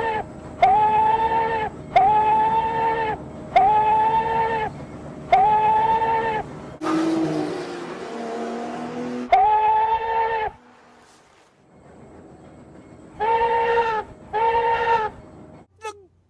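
The cracked steam whistle of Nickel Plate Road No. 587 blowing a run of short blasts of about a second each, a harsh two-toned sound. A loud rushing hiss about seven seconds in, and a quiet pause before the last two quick blasts.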